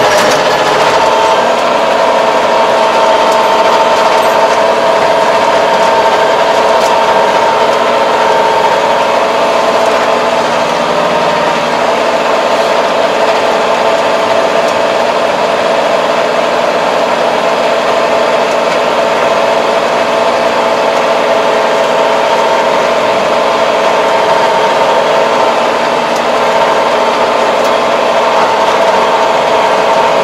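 2022 MZ775 tractor's engine running steadily under load while tilling, heard inside the cab, a continuous drone with a steady whining note.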